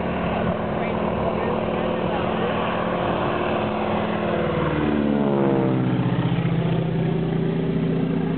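Biplane's radial engine and propeller running steadily as the plane flies past. About five seconds in, the pitch falls as it passes, then holds lower.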